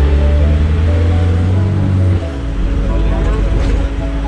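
Sightseeing bus engine drone, a loud low rumble that drops lower about two seconds in, under the tour commentary's background music.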